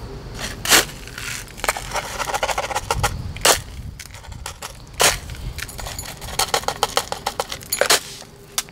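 Gritty potting soil trickling and rattling into a small pot around a succulent, with scraping and sharp clicks and knocks, three of them louder, and a quick run of clicks near the end.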